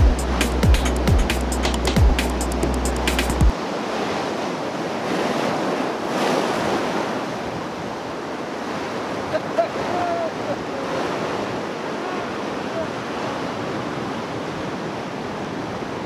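Background music with regular drum beats cuts off suddenly about three and a half seconds in. After that the steady rush of ocean surf breaking on a beach is left.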